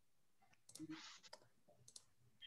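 Near silence broken by a few faint clicks and a brief rustle, about halfway through and near the end.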